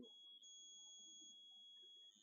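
Near silence with a faint, steady high-pitched whine held on one pitch, with a fainter tone an octave above.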